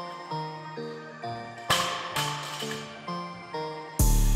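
Background music with a melody of short plucked notes; about halfway through, a loaded barbell with bumper plates hits the gym floor in two noisy crashes as it is dropped from the rack position.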